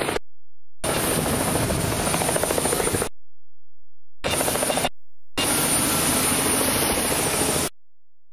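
Aircraft engine noise close by: a loud, rough, fluttering roar in choppy stretches that cut off suddenly into dead silence several times, going silent near the end.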